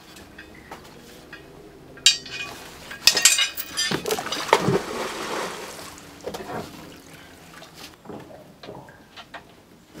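Clinks and knocks of metal gear being handled on a wooden deck, with a cluster of louder knocks about three seconds in and a short splashing, pouring rush of water just after.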